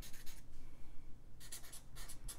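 Felt-tip marker writing on paper in a run of short strokes, with a brief pause about halfway through before the strokes resume.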